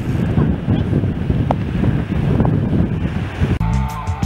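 Wind buffeting the microphone over sea surf breaking on a rocky shore, a loud churning rumble. About three and a half seconds in it cuts off and music begins.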